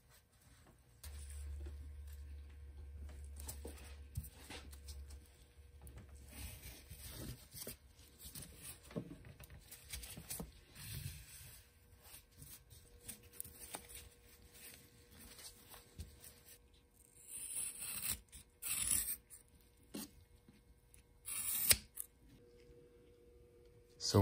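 Woven exhaust heat wrap being wound by gloved hands around a stainless steel turbo manifold: irregular rustling and scraping of the fabric against the pipes, with a few louder brief rustles in the last third.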